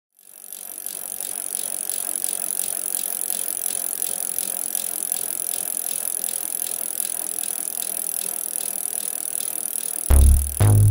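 Bicycle freewheel ratcheting as the rear wheel spins without pedalling, an even ticking several times a second that fades in at the start.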